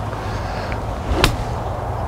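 A golf iron strikes a ball once, a single sharp click about a second in. The ball is caught without the club brushing the grass, so the shot comes off low.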